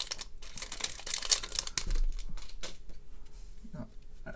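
Foil trading-card pack wrapper crinkling as it is handled and the cards are pulled out: a run of small crackles, busiest in the first two seconds and then thinning out.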